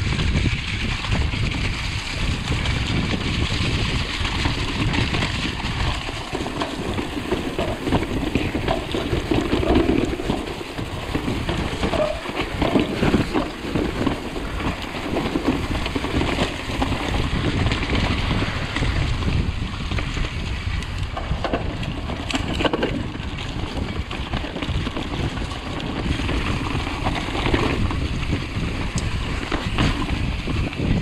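Mountain bike being ridden over a wet, muddy trail: steady wind buffeting on the camera's microphone with the low rush of tyres through mud and wet leaves, and frequent small rattles and knocks from the bike over bumps.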